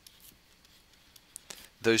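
Faint, scattered ticks and scratches of a stylus on a tablet screen, drawing a dashed line in short strokes.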